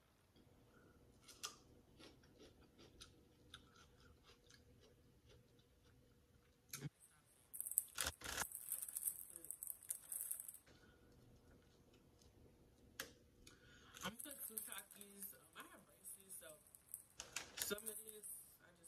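A plastic chip bag crinkling as a hand rummages inside it, in two spells starting about seven and fourteen seconds in. Between them come faint crunches of someone chewing raw bell pepper.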